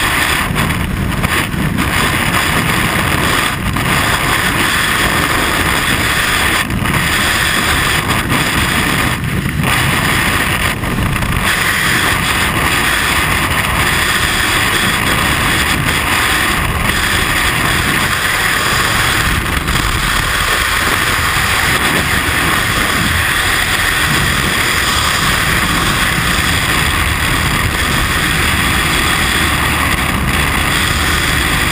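Skydiving freefall wind rushing over a helmet-mounted camera's microphone: a loud, steady rush of air at terminal velocity.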